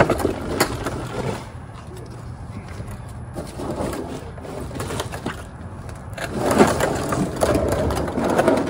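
Handling noise as a used-fluid drain pan is pulled out and moved: scattered clicks and scuffs over a low steady hum, growing louder and busier near the end.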